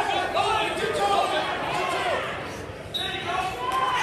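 Several people shouting and calling out at once in an echoing gym hall, with occasional thuds; the voices ease briefly a little before three seconds in, then pick up again.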